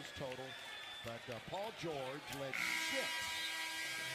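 Basketball broadcast audio playing back quietly: a commentator talking, then from about two and a half seconds in a steady hiss with several held tones underneath.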